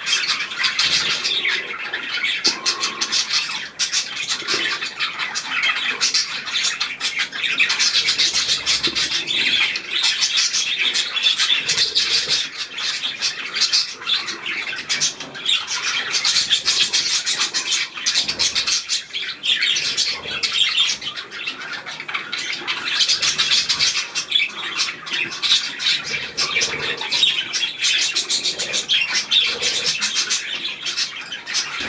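A flock of budgerigars chattering and warbling without pause, a dense mix of rapid chirps and squawks.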